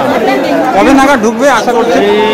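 Speech: a man talking, with the chatter of other voices around him.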